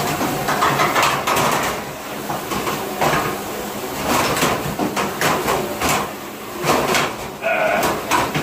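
Clattering and sharp knocks of metal and dishware in a commercial dish room, over a constant noisy background.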